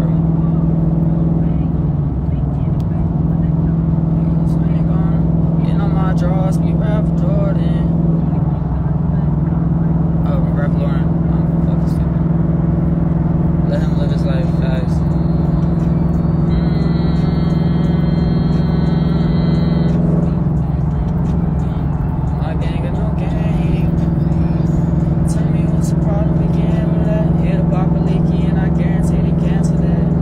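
Steady low drone of a car in motion, heard from inside the cabin, with faint voices or music underneath and a brief higher tone in the middle.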